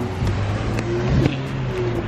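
A car engine running with a steady low hum, with a man's brief laughter at the start.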